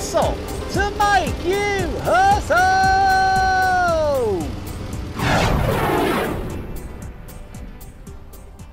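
A horse whinny sound effect over background music, a run of rising and falling neighs that ends in one long call dropping in pitch about four seconds in. A short rushing noise follows about five seconds in, and the music then fades out.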